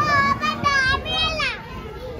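A young child squealing in a very high voice, three quick cries with the last sliding down in pitch, over the chatter of a crowd.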